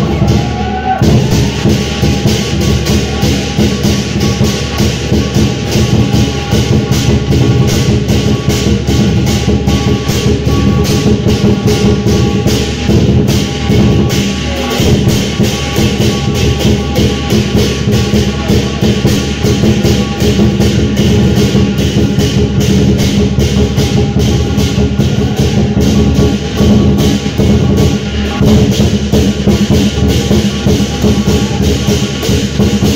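Chinese dragon dance percussion music: drum and cymbals beating a fast, steady rhythm.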